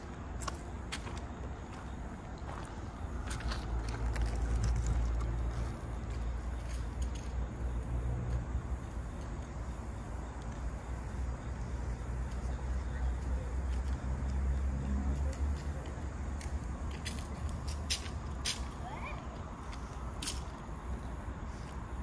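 Low rumble of a wheel loader's diesel engine running, swelling a few seconds in and easing off after about fifteen seconds, with scattered light clicks over it.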